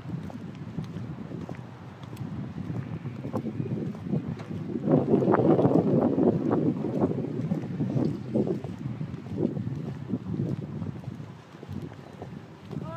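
Wind buffeting the microphone, rising in a strong gust about five seconds in, with the clacks of platform-heeled boots stepping on concrete.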